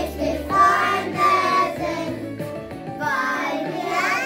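Children singing a song together over instrumental backing music, with held sung notes.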